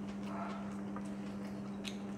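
Quiet chewing at a meal, with a few soft, faint clicks over a steady low hum.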